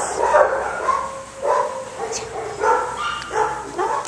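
Small dog whining and yipping: a string of short, high-pitched cries, several in a row.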